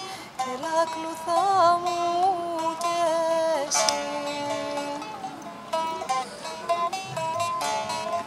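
A Greek folk tune played on a plucked string instrument: a winding melody, with a few strummed chords about four seconds in.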